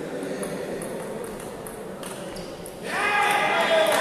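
Table tennis rally: the light clicks of the celluloid ball off bats and table over a murmur of voices in a large hall. About three seconds in, a sudden loud shout breaks out as the point ends.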